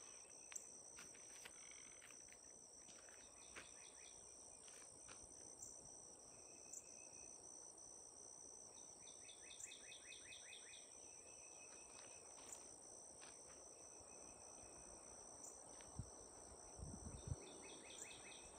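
Faint rural outdoor ambience: a steady, high-pitched insect drone, with a few short trilled calls scattered through it. A couple of soft thumps come near the end.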